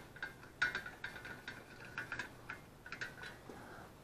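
Faint, irregular light metallic clicks and clinks of a chrome socket and extension being handled and fitted together by hand.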